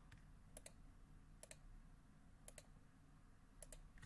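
Four faint computer mouse clicks about a second apart, each heard as two quick clicks, over near-silent room tone.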